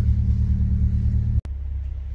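Car engine idling steadily with a low, even rumble, left running to recharge a flat battery after a jump start. About one and a half seconds in, it drops abruptly to a quieter, more distant thrum.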